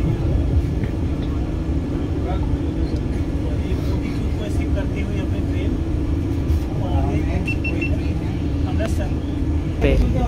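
Inside a coach of a moving Vande Bharat Express electric train: a steady running rumble with a steady hum, and faint passenger voices in the background.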